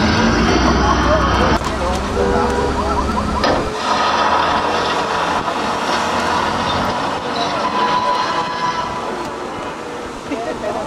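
Tour tram rolling, with indistinct voices over its running noise. A low rumble cuts off about three and a half seconds in, leaving a softer steady background.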